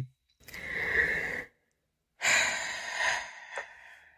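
A woman sighing twice: two long, breathy exhales about a second each, with a small mouth click near the end. They sound like exasperated disbelief.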